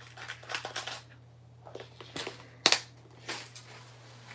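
Small metal parts clicking and rattling as a parts box of knife pocket clips is rummaged through, with one sharp, louder click about two-thirds of the way in.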